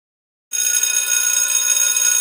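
Electric school bell ringing steadily, starting abruptly after silence about half a second in.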